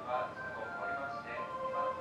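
Station platform public-address audio: a voice together with held melodic tones that change pitch every half second or so.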